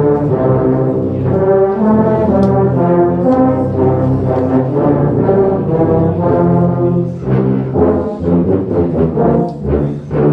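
A massed ensemble of tubas and euphoniums playing a Christmas carol in held low brass chords. From about seven seconds in the notes become shorter and more detached.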